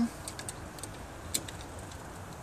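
A few light, irregular clicks over a steady background hiss.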